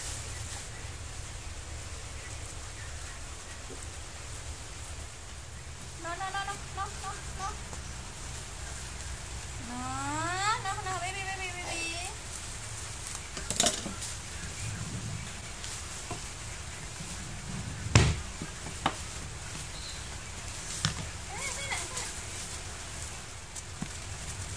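Plastic bubble wrap rustling and crinkling as it is handled and cut with scissors. There are a few sharp knocks in the second half, one much louder than the rest. In the first half, two short wordless voice sounds glide up and down in pitch.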